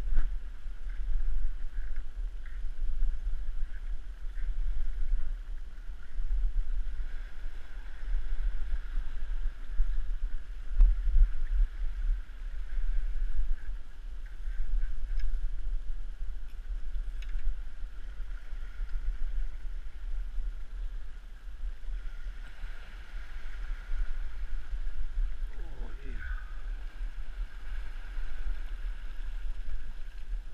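Sea washing and swirling against rocks, with wind rumbling on the microphone. Near the end a short sound slides down in pitch.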